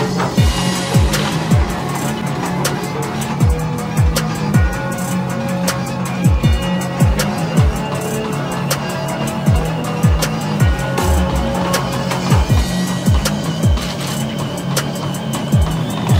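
Background music with a steady beat: deep bass hits that drop in pitch about twice a second, over fast ticking hi-hats.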